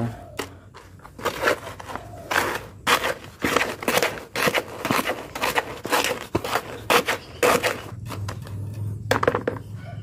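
A mason's trowel stirring dry sifted sand and cement in a bucket: repeated gritty scraping strokes, about two a second, as the dry mix is blended until even.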